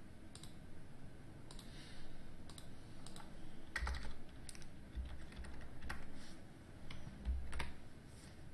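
Typing on a computer keyboard while editing code: irregular key clicks, a few a second, with a few dull low thuds among them.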